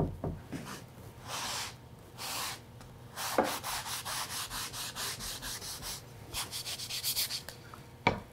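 Cotton rag rubbing over an oak board, wiping off excess stain and finishing oil: a light knock right at the start, a few slow swipes, then quick back-and-forth scrubbing strokes, about four a second, for the second half.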